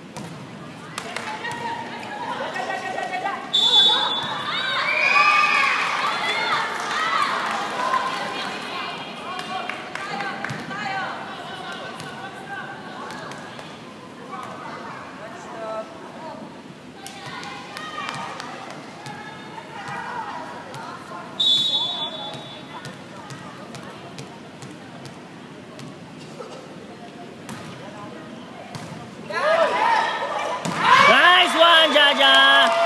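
Indoor volleyball match heard from the stands: a referee's whistle blows two short, shrill blasts, about three and a half seconds in and again about 21 seconds in. Between them come the sharp thuds of the ball being hit and the voices and shouts of spectators.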